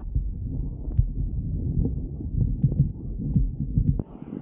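Low, uneven rumble of skis sliding over groomed snow mixed with wind buffeting the action camera's microphone, with a few faint clicks.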